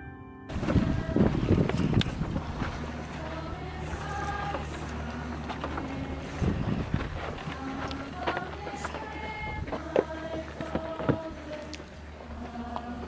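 Gusting wind on the microphone, heaviest in the first couple of seconds, with short held notes from a distant group of voices singing. Piano music ends about half a second in.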